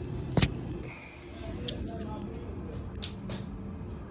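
A sharp click or knock about half a second in, then two lighter clicks a little after three seconds, over a steady low rumble of handling noise as a phone camera is moved around a golf cart.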